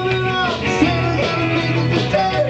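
Live rock band playing: a man sings into the microphone over electric guitar, a steady bass line and drums.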